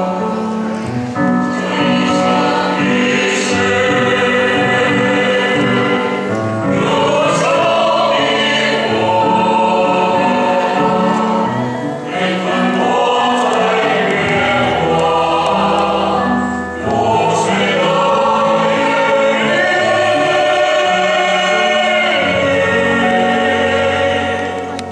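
Mixed choir of men's and women's voices singing in harmony, phrase by phrase, with violins playing along.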